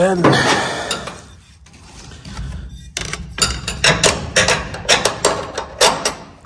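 Metal battery hold-down bracket clicking and knocking against the battery as it is handled, a run of sharp clicks about three a second through the second half.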